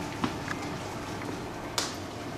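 Kitchen knife clicking against a cutting board while slicing century eggs into quarters: a few light clicks, the sharpest near the end.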